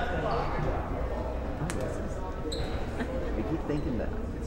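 Indistinct voices echoing in a gymnasium, with one sharp bounce of a basketball on the hardwood court a little before halfway and a brief high squeak soon after.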